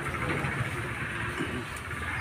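Steady outdoor background noise of a roadside market, carried by a low rumble of passing traffic, with no distinct chopping or knocking.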